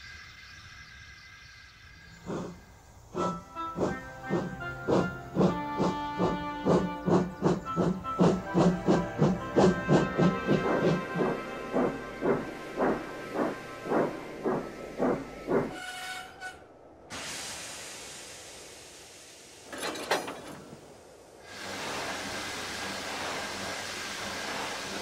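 Steam locomotive chuffing, a regular beat that spaces out as the engine draws to a stop. It is followed by two short bursts and then a steady hiss of escaping steam.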